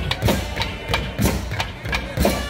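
Tamil temple procession music: drums struck in a steady rhythm, a stroke about every half second, with held wind-instrument tones sounding above them.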